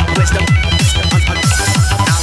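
Makina DJ mix: a fast, steady kick drum under a bright, high synth melody, with a hiss-like wash coming up in the highs near the end.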